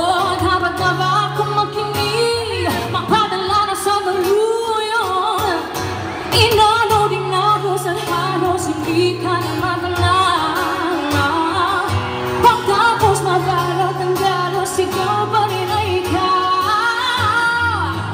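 A woman singing a pop ballad live into a microphone, with long held notes that bend and slide, accompanied by acoustic guitar and low bass notes that change every second or two, all through a PA system.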